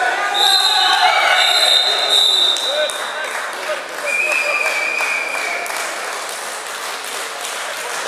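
Wrestling referee's whistle blown in two long blasts, stopping the action, then a longer, lower-pitched whistle blast about four seconds in, over spectators shouting.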